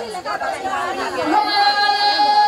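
A man's voice amplified through a microphone and loudspeaker, with crowd chatter. It speaks, then about one and a half seconds in settles into one long held note, like a chanted recitation.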